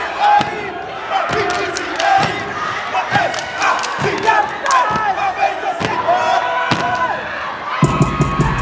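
Many voices yelling and chanting together over a steady stomping beat, about one heavy stomp a second, as a line of fraternity steppers step in unison.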